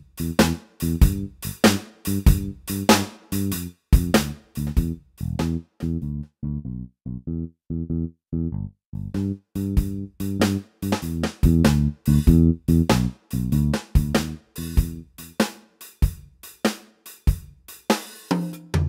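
Digitech Trio Band Creator's generated drum and bass backing playing a steady groove. The drums are turned down to nothing for about three seconds near the middle, leaving only the bass line, then brought back up.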